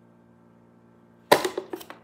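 Toy packaging box being grabbed and swung up close to the microphone: a sharp knock about two-thirds of the way in, followed by a few quick rustles and clicks. Before it, only a faint steady hum.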